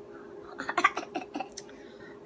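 Handling of a packaged fabric tapestry: irregular rustling and crackling as it is pulled out and unfolded, over a faint steady hum.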